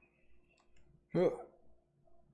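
A few faint clicks from headphones being handled and shifted on the head, in a quiet small room, with one short spoken word about a second in.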